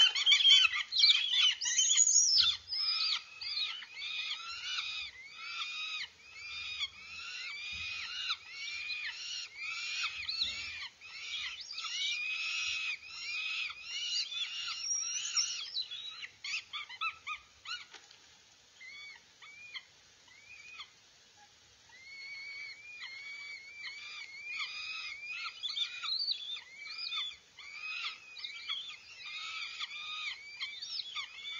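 Northern goshawk nestlings giving high, repeated, arching begging calls, several overlapping at once, loudest in the first few seconds. The calling thins out and lulls a little past halfway, then picks up again while the adult is at the nest with food.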